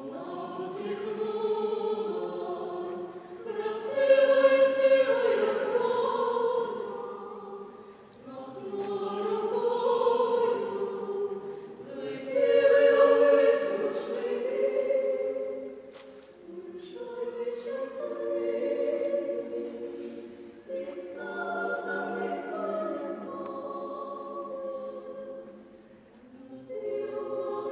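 A small mixed vocal ensemble of women's voices and one man's voice singing a cappella in a large church. The voices hold sustained chords in phrases, with short breaks between them.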